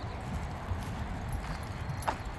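Footsteps of a person and dogs walking on asphalt, over a steady low rumble.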